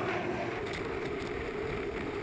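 Unlimited hydroplane's turbine engine running at racing speed: a steady tone over the rush of wind and spray.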